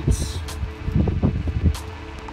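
Background music, with brief rustling and a single sharp click or knock just before the end.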